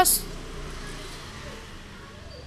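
The end of a spoken word with a short hiss, then a faint, steady background hiss that slowly fades, with no distinct handling sounds.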